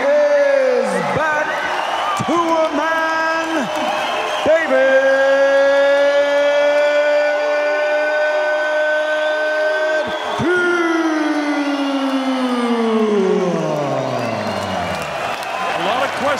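A ring announcer's voice over an arena PA calling out the boxing match winner in a drawn-out style. After a few shouted words, he holds one long call for about five seconds, then lets it slide steadily down in pitch, with faint crowd noise underneath.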